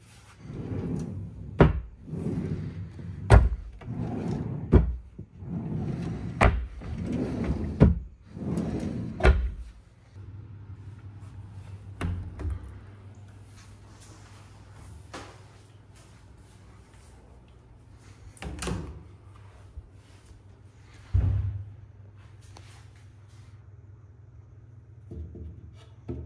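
Dresser drawers slid open and pushed shut one after another, about six times, each ending in a sharp knock. Then a steady low hum with a few scattered knocks, as cabinet doors are opened.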